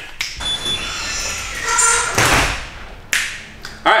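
Taps, knocks and a clatter of an AeroPress and a glass jar being handled and set down on a tabletop, with brief ringing tones from the glass. The loudest clatter comes about halfway through.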